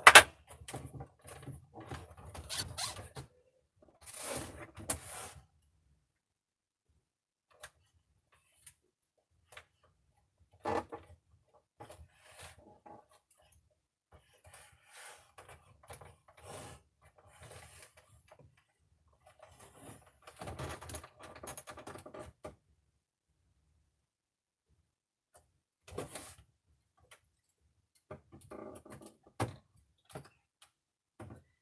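A plastic monitor case being handled, turned over and set down on a table. A sharp knock comes right at the start, then scattered clicks, knocks and rustles with quiet gaps between them.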